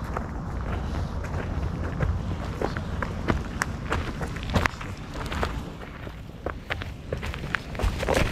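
Footsteps on a dirt bush track, a quick, uneven run of steps.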